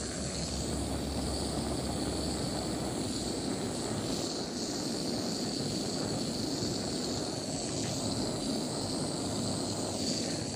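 Handheld gas torch on an extension hose burning steadily with a continuous rushing hiss as its flame scorches stained wood to brown it.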